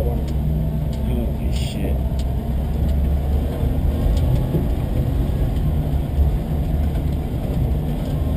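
The 1960 Willys Station Wagon's engine and drivetrain run at a slow, steady crawl, heard from inside the cab as a continuous low rumble. A few light clicks and a brief hiss about one and a half seconds in ride on top.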